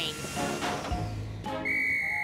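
Railway guard's whistle in an animated cartoon: one steady, high blast beginning about one and a half seconds in, signalling the train's departure. A fading hiss comes before it.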